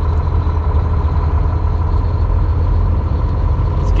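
Semi truck's diesel engine running as the truck rolls slowly, heard from inside the cab as a steady low drone with a faint constant whine above it.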